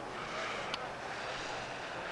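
Skis sliding and scraping on the snow of a slalom course, a steady hiss, with one faint click about three-quarters of a second in.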